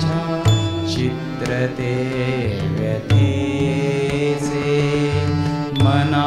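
Indian devotional music played live on harmonium, sitar and tabla: long held melodic notes over occasional deep tabla strokes.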